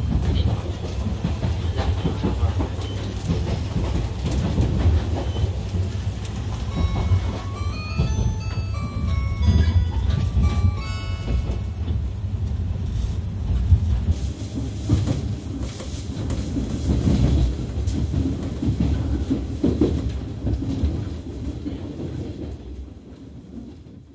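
Interior of a 485-series electric limited express train running: a steady low rumble with wheels clicking over rail joints. A few seconds in, a short melody of high chime notes plays over it, and the sound fades out near the end.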